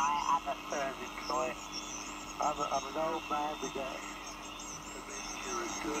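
An amateur radio operator's voice on the 40-metre band, received by a homebuilt regenerative receiver and heard through its speaker with steady band hiss behind it.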